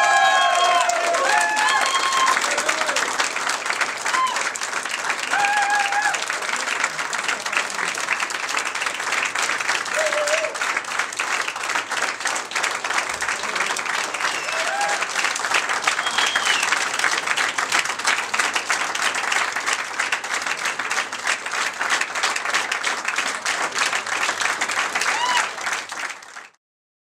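A crowd applauding steadily, a dense run of many hands clapping, with a few voices calling out over it in the first seconds. The applause cuts off abruptly at the end.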